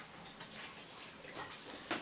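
Faint rustling and a few soft clicks of a paper greeting card being handled and opened.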